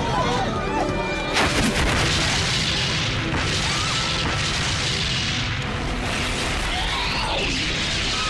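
An explosion goes off about a second and a half in and is followed by a long rumbling roar, over dramatic background music, with shouting voices now and then.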